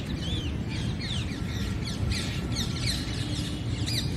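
Many birds chirping and calling at once, a dense run of short, quick, falling chirps overlapping one another, over a low steady rumble.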